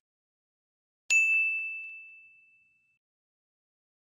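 A single bright chime rings out about a second in and fades away over about a second and a half. It is the notification-bell ding of a subscribe-button animation.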